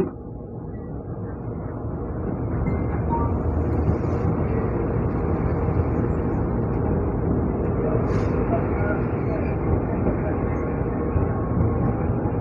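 Running noise of an MRT-3 light-rail train heard from inside a crowded car. It builds over the first few seconds as the train gathers speed, then runs steadily, with a brief higher sound about eight seconds in.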